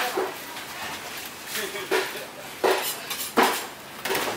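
Butcher's knife knocking and scraping against a stainless-steel table and bone while a side of pork is cut up: several sharp clacks at irregular intervals, the loudest near the end.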